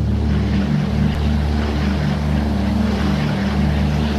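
A steady engine drone with a rushing noise over it, holding an even level throughout.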